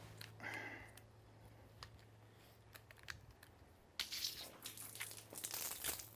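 Faint rustling and scattered short clicks of hands handling equipment, over a low steady hum; the rustling and clicking get busier about two-thirds of the way through.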